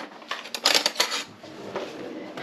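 Metal cutlery clinking and rattling in an open kitchen drawer, a quick cluster of clinks between about half a second and a second in, then fainter handling.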